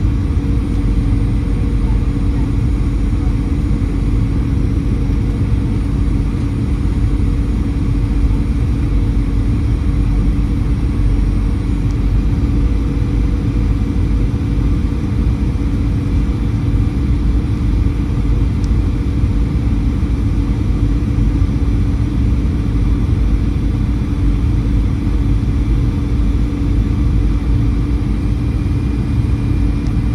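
Boeing 737-900ER cabin noise on final approach: a steady rush of airflow and CFM56-7B engine noise heard from inside the cabin, with a constant low hum.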